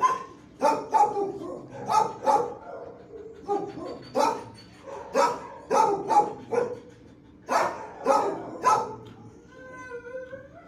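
Dogs in a shelter kennel block barking: about a dozen sharp barks in bursts of two or three, with a short pause before the last cluster. There is a brief whine near the end.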